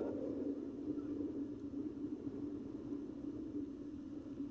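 Steady low outdoor background rumble with a faint even hum in it and no distinct events.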